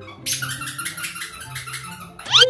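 Squeaky dog toy squeaked rapidly over and over for about a second and a half, starting a moment in.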